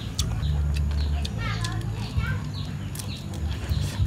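Short clicks and crackles of crisp grilled quail being broken apart by hand, over a low steady rumble, with a few high chirping calls in the background around the middle.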